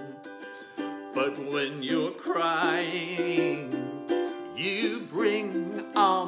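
Ukulele strummed as accompaniment, with a man singing over it, his held notes wavering with vibrato.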